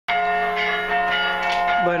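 Church bells ringing very loud, several bell tones sounding together and held steadily.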